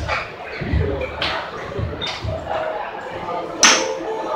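Golf club striking a ball once, a single sharp crack near the end.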